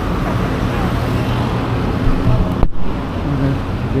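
Steady road traffic noise from cars passing on the road, with faint voices now and then. The sound cuts out for an instant about two-thirds of the way through.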